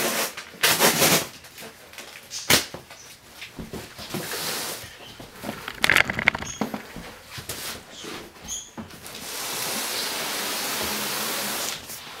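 Handling noise from a large cardboard shipping box being moved about on a wooden floor: several separate knocks and rustles, then a steady scraping noise for about the last three seconds.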